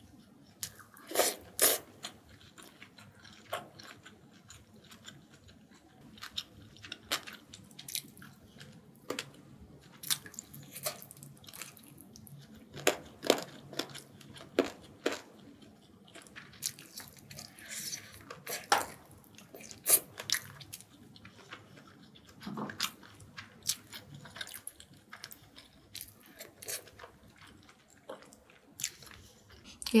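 Close-miked eating: a person chewing braised short ribs, with wet mouth smacks and irregular sharp clicks scattered through.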